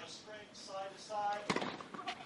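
A voice talking with no clear words, then a sharp knock about one and a half seconds in, followed by a few lighter taps.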